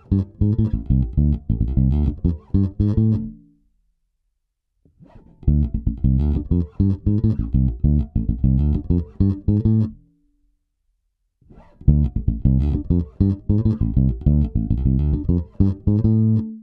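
Electric bass played fingerstyle through an Aguilar TLC Compressor pedal, a quick phrase of plucked notes played three times with short silent pauses between. The passes demonstrate the compressor's attack control, set from its fastest attack and turned clockwise.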